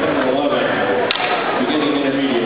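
A long martial-arts staff swishing through the air, then one sharp knock about a second in as it strikes the gym floor, with people talking in the background.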